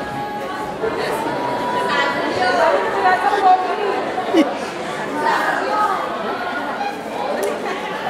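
Many people talking at once in a large hall, their voices echoing, with a few louder voices standing out about three to five seconds in.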